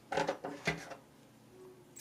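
A few soft, brief voice sounds and a single light click less than a second in, then near silence.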